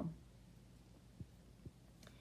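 Quiet low room hum with two faint soft taps about half a second apart: a marker pen touching down on a paper worksheet.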